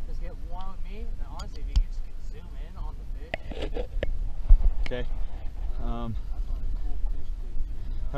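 Quiet, indistinct talk over a low steady rumble, with a few sharp clicks and knocks from a camera being handled.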